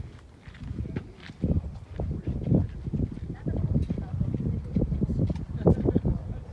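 Wind buffeting the microphone in irregular gusts, a low rumble that rises and falls.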